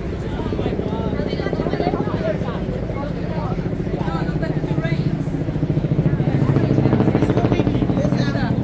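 A motor vehicle engine running close by with an even, pulsing drone that grows louder about six to seven seconds in, under people's voices.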